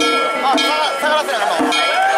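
Danjiri festival music: small hand-held gongs (kane), with a drum beneath, struck in a steady fast rhythm of about two strikes a second, each ringing brightly, with voices calling over it.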